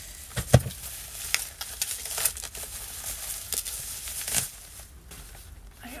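Plastic packaging crinkling and rustling in short bursts as it is pulled off a plastic water bottle, with a dull thump about half a second in. The crinkling dies down after about four and a half seconds.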